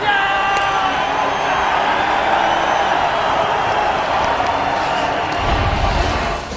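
An arena's end-of-game horn sounds one steady note for about a second, marking the final buzzer. It is followed by the running noise of the arena crowd, with cheering.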